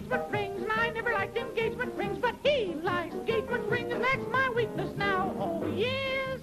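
A high voice yodeling in quick, breaking notes over a novelty dance band's accompaniment.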